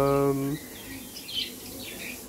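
Faint, short chirps from lovebirds in their cage, heard about a second in after a man's drawn-out hesitation sound at the start.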